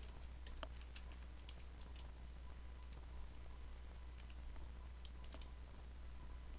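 Computer keyboard keys clicking faintly and irregularly as code is typed, over a low steady hum.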